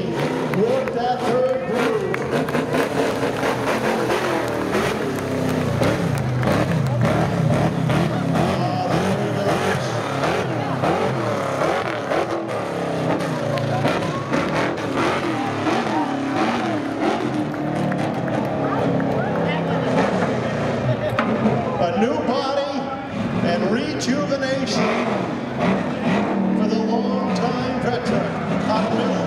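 A Sportsman stock race car's engine running on a slow victory lap, its pitch wavering up and down, mixed with indistinct voices from the crowd.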